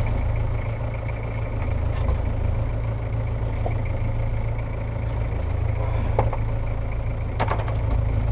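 Fishing boat's engine idling, a steady low hum, with a few short clicks near the end.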